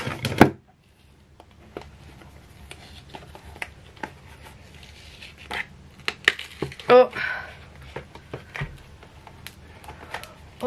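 Flexible silicone cake mould being bent and peeled away from a cured epoxy resin disc: faint scattered clicks, rubbing and crinkling as it releases. A short vocal exclamation sounds about seven seconds in.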